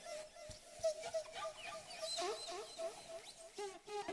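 Faint chorus of many animal calls overlapping, short calls repeating continuously with no pause.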